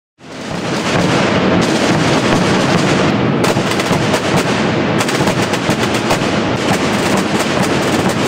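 Several Aragonese Holy Week tambores (large snare-style drums) beaten together with sticks in a fast, continuous roll of dense strokes, fading in over the first second.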